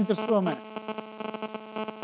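A voice trails off, then a steady electrical hum with many overtones runs on, with a few faint clicks over it.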